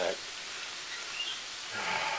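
Shrimp and broccoli sizzling in a frying pan, a steady hiss as the refrigerator-cold broccoli heats up with the shrimp.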